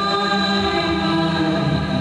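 Live music: a woman singing long held notes over a steady sustained keyboard drone, several pitches sounding together without a break.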